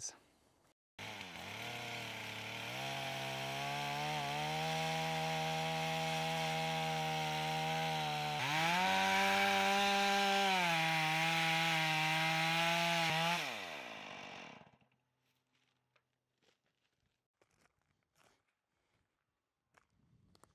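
Chainsaw running in a Granberg Alaskan mill, ripping lengthwise through a log. Its engine note cuts in suddenly about a second in, steps up in pitch partway through, then drops and fades away a little before the end.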